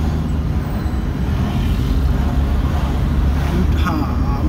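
Steady low rumble of a car's engine and road noise, heard from inside the cabin while it drives in traffic.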